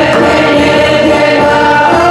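Polish backyard folk band (kapela podwórkowa) playing a dance tune, with several voices singing together over sustained instrumental notes.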